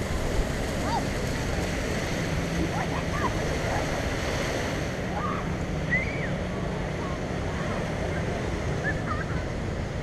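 Small waves washing onto a sandy beach: a steady wash of surf at an even level.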